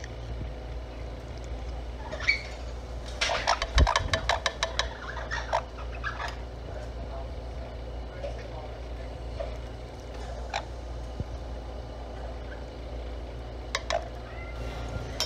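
Orange-winged amazon parrot eating apple oatmeal: a quick run of sharp beak clicks and taps about three seconds in, then a few single clicks, over a steady low hum.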